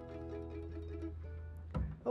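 A bluegrass string band's last chord ringing out and fading: guitar, mandolin and banjo over a held upright-bass note. The bass note stops shortly before the end.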